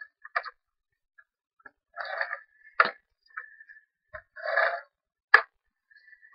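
Scotch ATG adhesive transfer gun laying tape onto cardstock: two short rasping runs of about half a second each, with sharp clicks in between and a louder click near the end.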